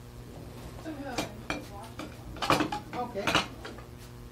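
Dishes and cutlery clinking and clattering as they are handled, with a few sharp knocks in the second half.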